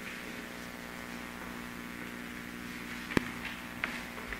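Steady electrical hum with faint handling sounds, and one sharp knock about three seconds in.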